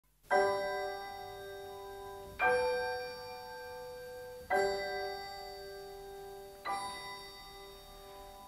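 Music: four bell-like chimes struck about two seconds apart, each ringing out and fading, the last one softer, as the introduction of a Christmas song.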